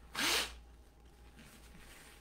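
A man sneezes once, a short, hissy burst just after the start, followed by quiet room tone.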